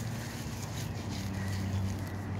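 A steady, low engine-like hum.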